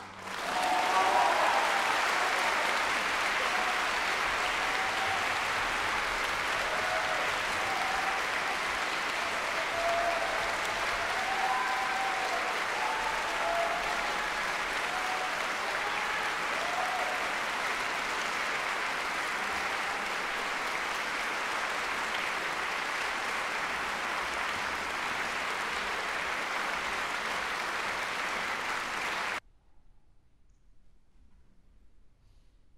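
Concert-hall audience applauding, a dense, steady clapping that swells in at once and holds at an even level, then cuts off abruptly near the end.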